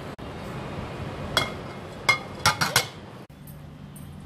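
Dishes clinking: about four light, sharp clinks in the middle, over a faint steady hiss.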